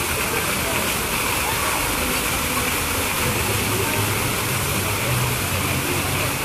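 Water from a fountain's rows of vertical jets falling and splashing into its pool, a steady rushing hiss. A low hum joins in about three seconds in.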